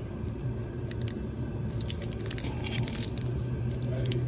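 Clear plastic wrap on a new spin-on oil filter crinkling as it is turned in the hand, with a cluster of crackles about two to three seconds in, over a steady low hum.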